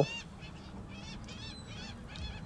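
Birds calling: a quick run of short, high chirps repeating through the moment, fairly quiet.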